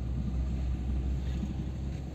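Steady low rumble of a car's engine and tyres, heard from inside the moving car.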